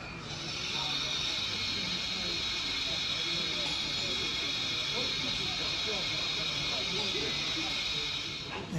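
Steady hiss of escaping steam from a model railway's steam-locomotive sound system, starting just after the beginning and holding even throughout, over a murmur of background voices.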